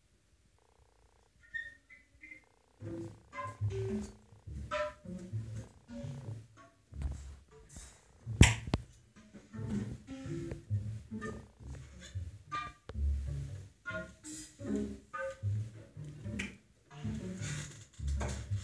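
Small acoustic jazz quartet of clarinet, saxophone, double bass and drums playing sparse, experimental music. After a brief silence at the start, it comes in as scattered short notes, low bass notes and light drum strikes, with one sharp loud hit about halfway through.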